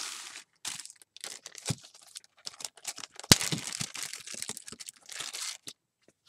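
Plastic packaging of craft stamp and die sets crinkling and rustling as it is handled, with scattered small clicks and one sharp click a little over three seconds in.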